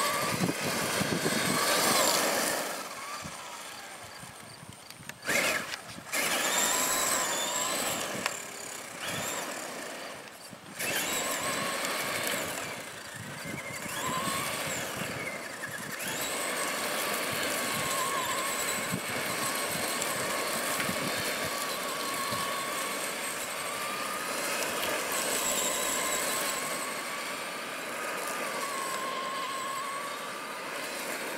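Traxxas Summit RC truck's electric motor and drivetrain whining, the pitch rising and falling with the throttle, over the crunch of its tyres on gravel. The whine drops away briefly a couple of times, then picks up again.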